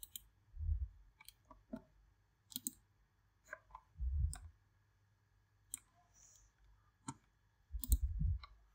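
Computer mouse clicking at irregular intervals, about a dozen sharp clicks with some quick double clicks, as items in a software tree are selected. Three dull low thumps, about half a second, four seconds and eight seconds in, are the loudest sounds.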